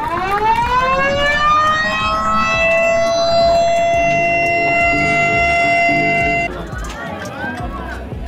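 Ceremonial siren set off by a push-button to mark the official opening of a toll road. Its tone winds up in pitch over about two seconds, holds steady, then cuts off suddenly about six and a half seconds in.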